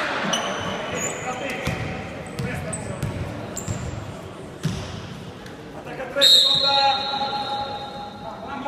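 Indoor volleyball hall between rallies: shoe squeaks on the court floor, dull thuds of a ball bounced on the floor, and crowd voices. About six seconds in, a referee's whistle blows sharply, the loudest sound, signalling the serve.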